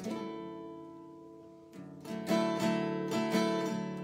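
Acoustic guitar: one strummed chord that rings and slowly fades, then steady rhythmic strumming that picks up about two seconds in.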